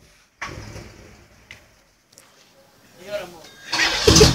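1990 Cadillac Fleetwood's V8 heard through a noisy exhaust. A short burst of engine sound about half a second in dies away, then it goes nearly quiet until a loud surge of engine sound near the end.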